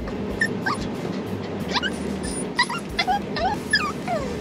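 Small dog whimpering, a string of short high whines that mostly rise in pitch, over a steady low background hum.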